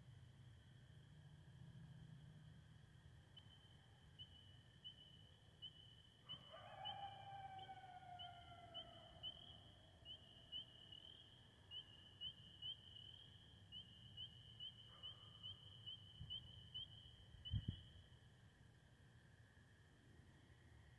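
Distant coyote howl: one long, faint call that slides down in pitch about six seconds in and lasts about three seconds, over a steady high chirping that pulses about twice a second. A short low thump near the end.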